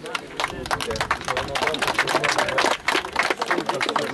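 Scattered hand clapping, many quick irregular claps densest in the middle, over voices.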